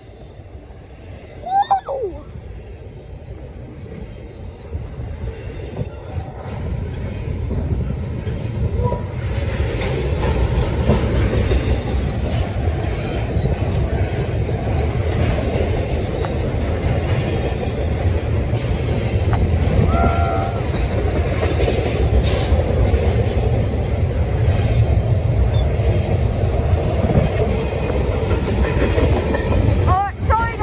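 Double-stack intermodal freight train rolling past, its well cars rumbling and clattering over the rails. The rumble grows louder over the first ten seconds or so, then holds steady.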